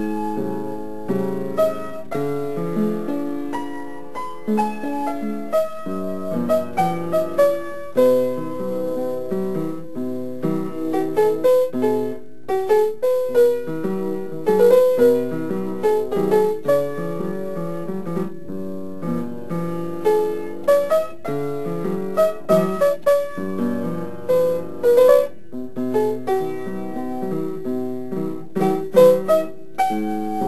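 Piano music: a melody played over chords, with a brief pause about twelve seconds in.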